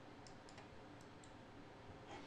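A few faint computer mouse clicks against near-silent room tone, as the mouse is right-clicked to open a menu.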